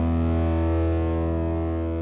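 Background music: a sustained chord held steadily and slowly fading out.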